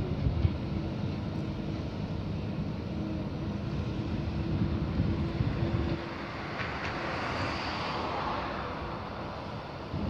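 Jet ski engine running on the water, a steady drone with a hiss that swells and fades in the second half, over wind buffeting the microphone.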